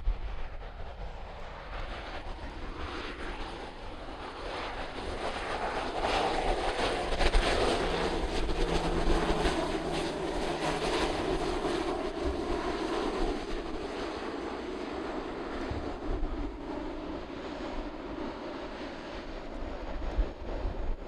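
Shorts 360 turboprop landing, its twin turboprop engines and propellers growing louder as it passes and touches down, loudest about midway, then easing as it rolls out down the runway. Low wind rumble on the microphone underneath.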